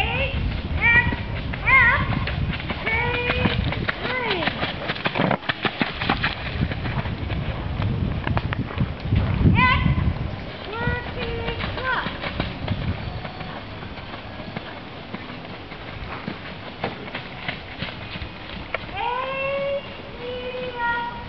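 Indistinct high voices talking in short phrases, with scattered knocks and a low rumble through the first half.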